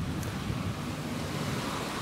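Steady outdoor background noise picked up by a reporter's clip-on microphone, a rushing hiss with wind on the microphone.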